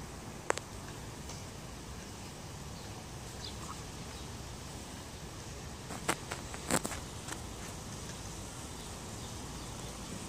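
Quiet outdoor street ambience: a steady low background noise broken by a few sharp clicks, one about half a second in and three or four close together around six to seven seconds in.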